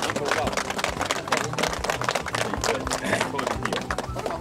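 A small group of people clapping in applause, a dense patter of hand claps, with background music underneath.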